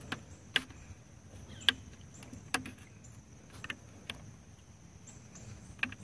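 A handful of sharp, light clicks and taps, spread irregularly, as a flathead screwdriver is worked under the small screw holding the plastic fan shroud to the radiator of a BMW E36, to prise it out.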